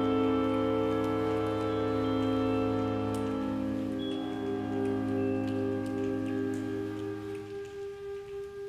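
School concert band playing slow, sustained chords that gradually thin out and fade toward the end. From about halfway through, a held note pulses about twice a second.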